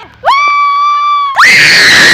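High-pitched human screams. First comes one long, level shriek. About a second and a half in, a louder, rougher scream follows.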